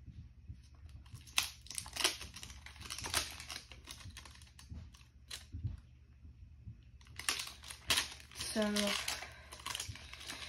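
Plastic wrapper of a small mystery fidget-toy pack crinkling in the hands as it is handled and worked open, in an irregular run of sharp crackles, loudest about a second and a half in.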